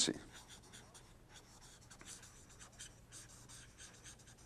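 A felt-tip marker writing on paper: a run of short, faint strokes as a word is written out.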